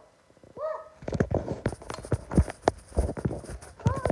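A short pitched call that rises and falls about half a second in, then a rapid, irregular run of knocks and clicks.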